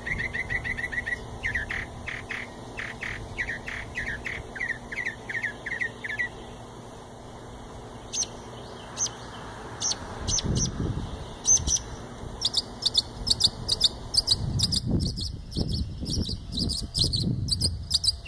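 A songbird singing: rapid repeated notes for about six seconds, then after a short lull a long run of quicker, higher-pitched repeated notes in shifting phrases. A low rumble sits under the song twice.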